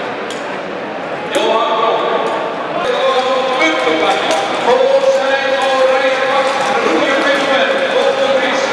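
A man's voice echoing over loudspeakers in a large indoor rink, with drawn-out words, and a few sharp clicks scattered through it.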